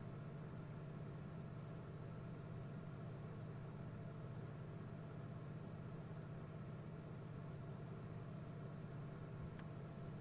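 Steady low hum with a faint hiss, the background noise of an open microphone on a call, with a faint click near the end.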